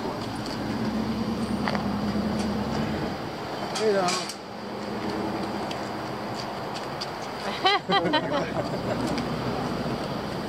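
Voices of people nearby, with two short loud bursts about four and eight seconds in, over outdoor background noise. A vehicle engine hums steadily in the first few seconds.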